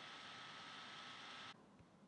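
Near silence: a faint steady hiss with a thin high tone in it, which drops away abruptly about one and a half seconds in.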